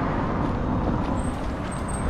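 Steady street background noise: an even low rush with no distinct events.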